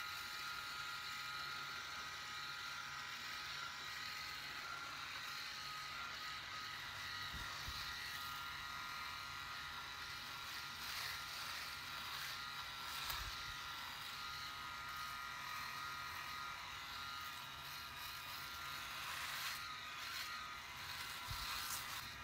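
Phisco RMS8112 rotary electric shaver with three double-track heads running at a steady, quiet high hum, its heads working through foam and stubble on the face.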